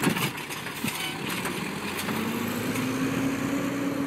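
Diesel engine of an automated side-loader garbage truck running after it has set the emptied cart down, its pitch rising slowly in the second half as it moves off.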